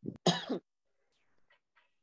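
A person coughs once at the start, a short harsh burst, followed by a few faint keyboard taps as a word is typed.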